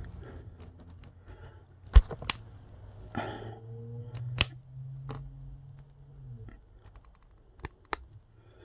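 Plastic action figure hand being pulled off and pushed onto its wrist peg: faint rubbing with a few sharp clicks and snaps, and a low steady hum for a few seconds in the middle.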